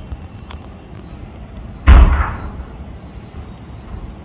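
A single sudden, loud thump about two seconds in, fading within half a second, over a steady low background rumble, with a few faint clicks.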